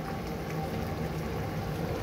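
Steady low hum in a kitchen, with a pan of hilsa-and-aubergine sour curry simmering.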